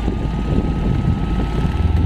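Car air-conditioning blower running strongly, a steady rush of air with a thin whine that rises slightly in pitch and then holds. Underneath is the idle of the 1983 Toyota Corolla's 4K 1.3-litre four-cylinder engine.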